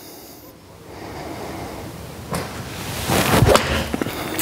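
A golf iron swung and striking a ball off a practice mat: a rising swish of the downswing, then the strike a little over three seconds in, the loudest moment.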